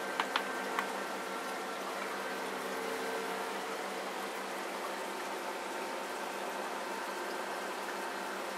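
Steady background of aquarium water bubbling and running, with a faint hum of equipment. A few light clicks of plastic and metal containers being handled fall in the first second.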